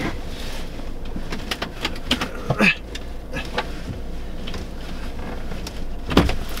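Scattered knocks and clicks of someone working at a frozen door from inside a pickup's cab, over a steady low rumble.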